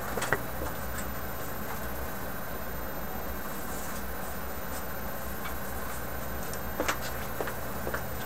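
Steady low hum and hiss of workshop room tone, with a few light knocks and clicks, one just after the start and a couple about seven seconds in.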